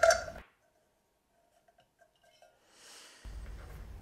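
Near silence, likely a pause edited into the sound track, with faint room tone returning about three seconds in.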